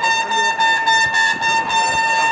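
A trumpet holding one long, high note over crowd noise.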